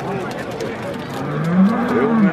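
A bull bellowing: one long, low call that begins a little past a second in, rising and then falling in pitch, with crowd voices behind it.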